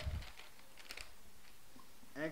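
Whiteboard marker tapping and stroking on the board as letters are written: a few short, faint clicks, clustered about a second in.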